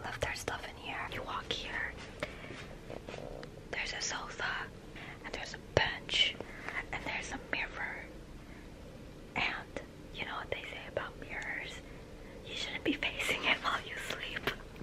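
Whispering voices in short back-and-forth phrases, with a sharp click about six seconds in.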